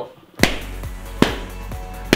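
Two balloons bursting as a laser burns through them, one sharp pop about half a second in and another about a second later, over background music.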